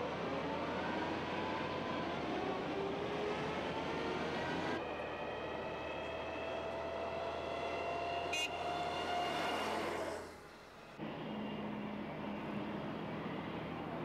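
A convoy of military armoured vehicles driving past on a road, their engines and tyres running with faint whining tones that slowly slide up and down in pitch. The sound drops away for about a second near the ten-second mark, then resumes.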